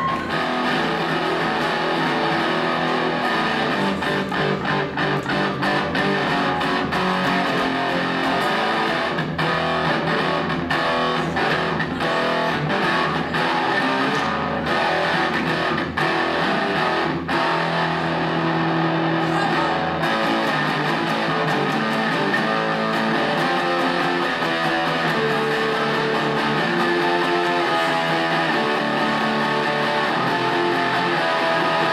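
Electric guitar played live without a break, a continuous run of changing notes and chords.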